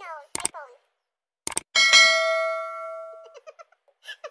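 A bell-like ding rings out and fades over about a second and a half. Before it come a quick downward-sliding sound and a few sharp clicks.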